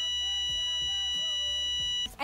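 A steady, high-pitched electronic beep held for about two seconds, cutting in and out abruptly.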